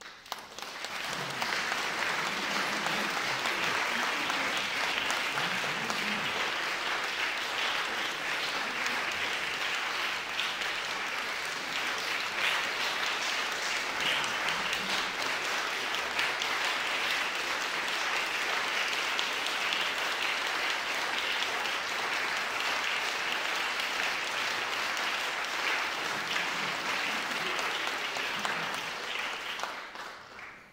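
Audience applauding: dense, steady clapping that starts suddenly, holds for about half a minute and dies away near the end.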